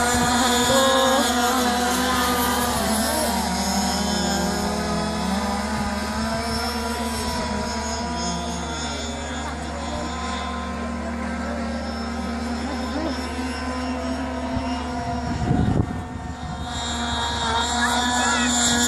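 Radio-controlled model racing boat engine running at high revs on the water, a steady high-pitched whine whose pitch drifts up and down as it runs. A brief low rumble comes near the end.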